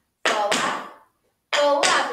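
Tap shoes doing flaps on a studio floor: two flaps about a second and a half apart, each a quick pair of clicks from the brush and the tap of the metal plate, with a woman's voice calling over them.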